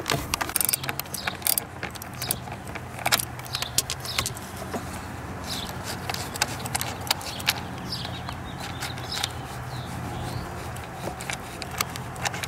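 Irregular small metallic clicks and light clatter of a socket wrench and fingers loosening and unscrewing a 10 mm nut, with its washers, from a bolt.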